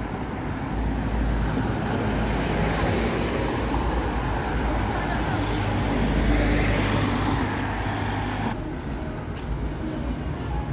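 Street traffic: cars and motorbikes passing close by, with engine rumble and tyre noise that swells to its loudest about six to seven seconds in, then drops away abruptly near the end.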